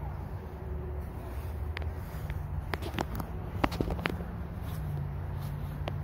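Footsteps while walking outdoors, with a few sharp irregular clicks and knocks over a steady low rumble.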